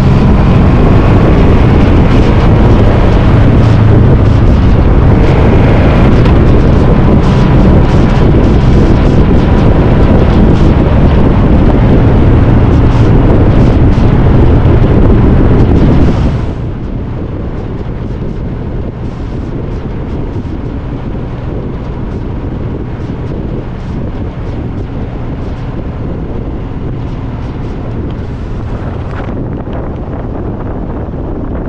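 Motorcycle on the move, its engine running under heavy wind rush on the microphone. A little past halfway the sound drops suddenly to a quieter, duller steady rush.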